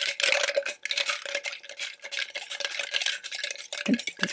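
Ice cubes being stirred with a spoon in a metal cocktail shaker tin: a continuous clinking and rattling of ice against the metal, with a faint ring from the tin, as the drink is chilled and diluted.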